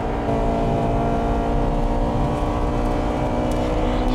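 A Honda Integra Type R DC2's 1.8-litre VTEC four-cylinder engine, heard from inside the cabin, running hard at a steady pitch as the car laps the circuit.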